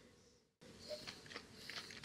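Faint mouth sounds of someone sipping wine and working it around the mouth: a few soft slurps and small clicks about a second in, otherwise near silence.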